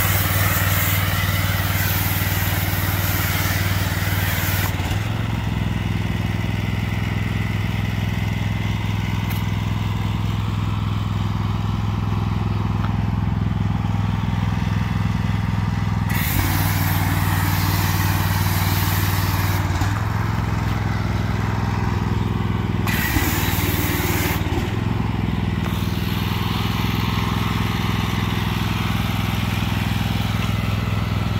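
Gas pressure washer engine running steadily. A foam cannon's spray hisses in four stretches as the trigger is squeezed: from the start for about five seconds, about sixteen seconds in, briefly about twenty-three seconds in, and again near the end. The engine's note shifts as each spray starts and stops.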